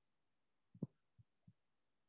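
Near silence: room tone, with one faint, very short sound a little under a second in.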